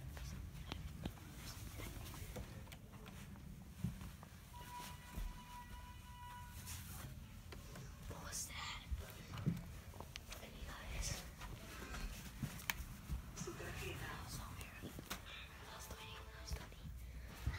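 Faint whispering over the low rumble of a handheld phone being moved, with scattered small knocks. A held tone lasting about two seconds comes about five seconds in.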